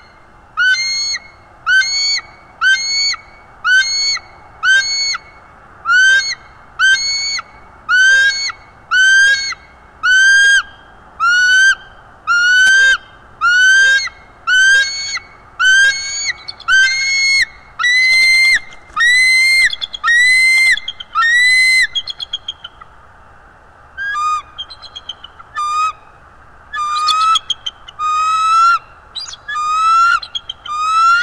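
Bald eagle calling: a long series of loud, high, whistled notes at about one a second. After a short pause about two-thirds of the way through come quicker, stuttering chatter notes.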